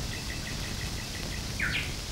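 Outdoor ambience with birds: a quick, even run of faint high chirps, then a single downward-sweeping bird call near the end.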